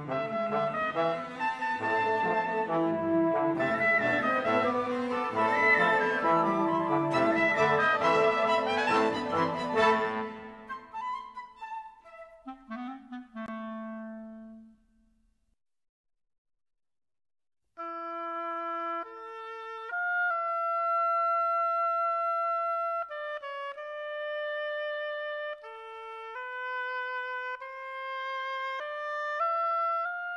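A seven-instrument chamber ensemble of strings, brass and woodwinds playing together, fading out about halfway through to one low held note, then a short silence. After the silence a single woodwind plays a slow solo melody of held notes.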